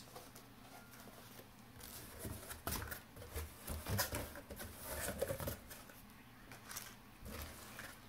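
Cardboard box and packaging being handled: faint scattered rustles and light knocks, busiest from about two seconds in until near six seconds.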